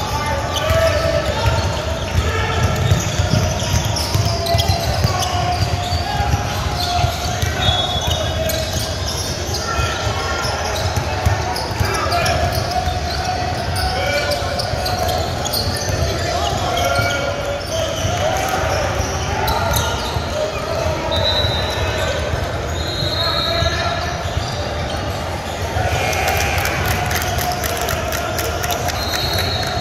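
Indoor basketball game in a large echoing gym: a ball bouncing on the hardwood court, short sneaker squeaks now and then, and indistinct voices from players and spectators.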